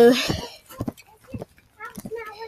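A child's voice holds a loud, wavering vocal sound right at the start, then a few thumps follow, and another drawn-out vocal tone begins near the end.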